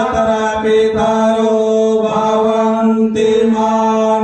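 Vedic Sanskrit mantras chanted on a steady pitch in long held notes, with short breaks between phrases.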